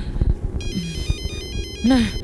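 Mobile phone ringing with an electronic ringtone: a quick beeping melody of high, stepping tones that starts a little over half a second in.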